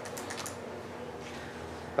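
Faint handling of a book's paper pages: a few light ticks in the first half-second, then soft rustling.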